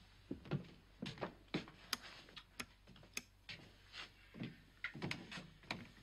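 Lift control buttons being pressed over and over: about a dozen quiet, sharp clicks at uneven intervals. The stalled, powerless lift does not respond.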